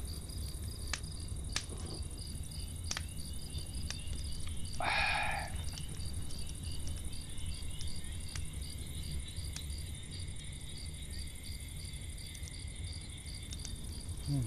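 Crickets chirping steadily in night ambience, a regular high pulsing with a continuous trill beneath it. A brief soft noise stands out about five seconds in.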